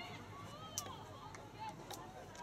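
Faint, distant voices of players and onlookers calling out across an open playing field, with two short sharp clicks, one a little under a second in and one near the end.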